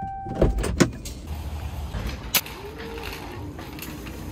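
Sounds of getting out of a car: a steady electronic tone that stops about half a second in, two heavy car-door thuds close together, then a low rumble and a single sharp click a little past the middle.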